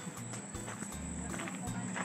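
Quiet, irregular footsteps on a dirt path, with intermittent low rumble on the microphone.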